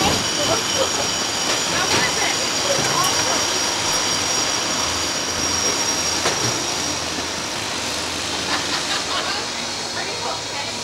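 Steady outdoor background noise picked up by the ride's onboard microphone, with a thin high whine that fades out near the end and faint voices.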